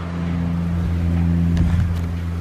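Steady low hum of a motor vehicle's engine running nearby, swelling slightly about a second and a half in.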